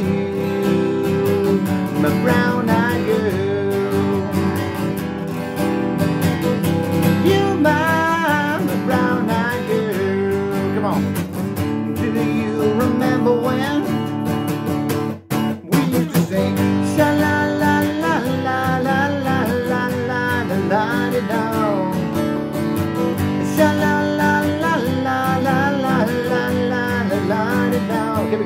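Acoustic guitar strummed in a steady rhythm, with a wordless vocal melody over it. The sound cuts out for a moment about halfway through.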